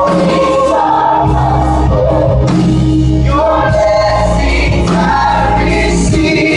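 A gospel choir and live band performing, the choir singing long held notes over keyboards and a steady bass line.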